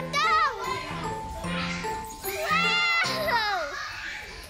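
A young child's high-pitched squeals of delight while coming down a tube slide: a short one at the start and a longer one about halfway through that falls in pitch at its end, over background music.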